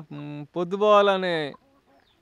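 A chicken calling: a short, flat-pitched note, then a longer note of about a second that drops in pitch at its end.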